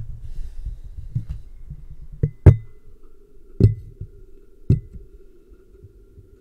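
Microphone held inside a container of hydrogen peroxide: a muffled low rumble with a faint steady hum, broken by four sharp pops, the loudest about two and a half seconds in. It is the barely audible bubbling of oxygen escaping as the peroxide slowly decomposes, mixed with the microphone knocking against the container.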